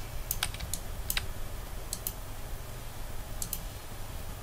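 Scattered clicks of computer input at a desk: about eight short sharp clicks, irregularly spaced and some in quick pairs, over a faint low steady hum.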